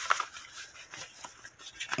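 Faint rustling and soft scattered clicks of a paper envelope being folded and handled.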